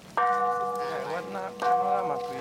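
Large hanging temple bell struck twice, about a second and a half apart, each strike ringing on with several steady tones.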